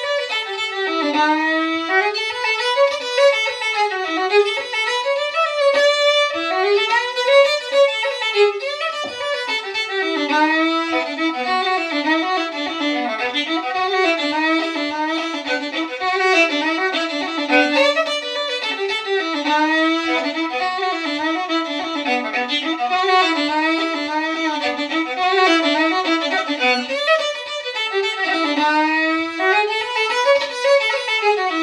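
Solo fiddle playing a bowed folk-style tune, a continuous melody of quick running notes.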